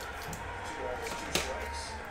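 Quiet room with faint voices in the background and one short, light click a little past halfway.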